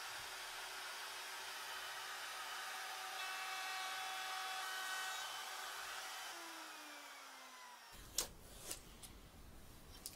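Trim router running on a sled jig, thicknessing a guitar neck's headstock (to 15 mm), a steady whine that winds down in pitch after about six seconds as the motor slows. A couple of sharp clicks follow near the end.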